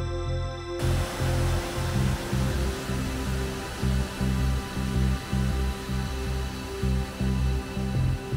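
Background music with a steady beat. About a second in, the rushing of river water joins it and runs on under the music.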